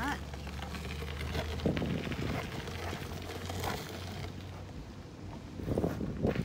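Outdoor background noise with wind on the microphone and handling rustle from a handheld camera, with a few short steps on gravel near the end.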